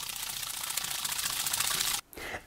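Bottle of Cerakote ceramic coating shaken hard, liquid sloshing in a rapid, even rhythm that grows a little louder and cuts off abruptly near the end. The shaking remixes the acetone and thinners that have settled at the bottom.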